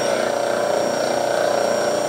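Rhodes metal shaper running slowly on a temporary drive system, a steady mechanical hum as the ram travels its stroke at about four strokes per minute.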